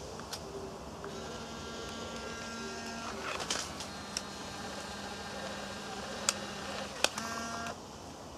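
Fujifilm instax mini 90 instant camera's small motor whirring in several stretches, with sharp mechanical clicks (the loudest about seven seconds in), as the camera works through a double exposure and ejects the print.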